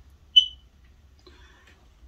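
A single short, high-pitched chirp a little under half a second in.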